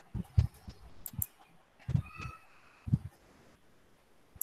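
Several short, low knocks and clicks from a computer or its microphone being handled, with a brief high-pitched tone or call about two seconds in.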